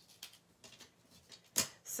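Small scissors snipping through a strip of kraft paper, a run of faint short snips, with one sharper, louder click about a second and a half in.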